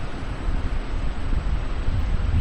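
Steady background noise of the recording: a low rumble with hiss over it, with no distinct event.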